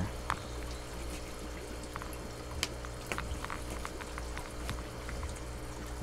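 Steady running water from an aquaponics system, over a low steady hum, with scattered faint clicks as a knife cuts through a foam pool noodle.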